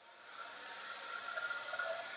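Street traffic noise played back through a phone's speaker. A vehicle's rush swells to a peak near the end and then fades as it passes.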